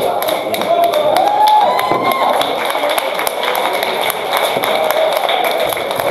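Clattering knocks of steel weapons and plate armour in a close armoured melee, with raised voices shouting over it in the first couple of seconds.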